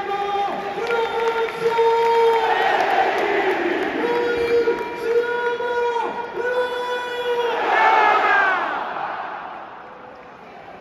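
Packed stadium crowd of AS Roma supporters chanting in unison in long, held notes. About eight seconds in the chant gives way to a swell of cheering, and then the noise dies down at the end.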